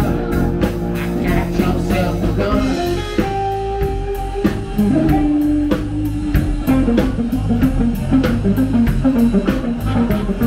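A blues band playing live: electric guitars over a drum kit keeping a steady beat, with a few long held notes in the middle followed by a run of quicker notes.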